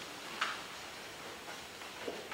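Quiet room with a group of people getting up from chairs: faint shuffling and rustling, with one short click about half a second in and a softer one later.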